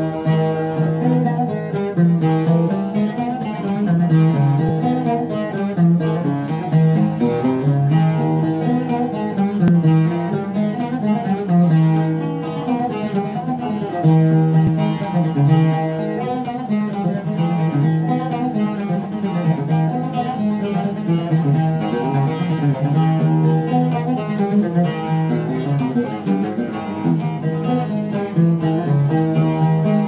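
An oud and a bağlama playing a Turkish folk tune (türkü) together, a plucked instrumental passage with a repeating melodic figure.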